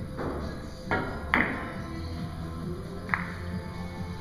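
Russian billiards (pyramid) shot: a cue tip strike, then hard clicks as the balls collide and scatter across the table. The loudest click comes about a second and a half in, and a single sharp click follows near three seconds.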